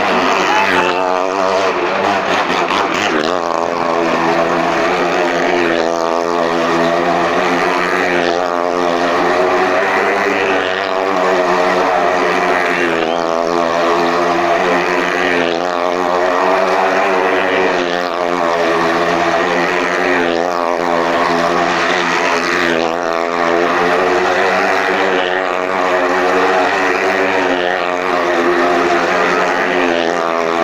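Motorcycle engine running at high revs as it circles the wooden wall of a well of death, swelling each time it passes, about every two and a half seconds.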